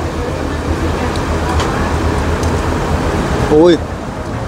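Steady rush of air with a low rumble from a large metal electric fan blowing toward the microphone. A man gives a short exclamation near the end.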